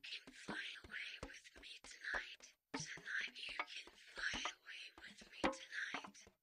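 Close-up whispered reading, breathy phrases broken by many small sharp clicks, with a short pause about two and a half seconds in.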